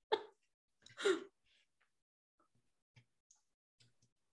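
A person's brief, breathy vocal sound in two short bursts, the second and louder one about a second in, then near quiet.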